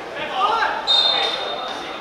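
Referee's whistle blown once, a single steady shrill note held for about a second, stopping play for a foul. Players' shouts come just before it.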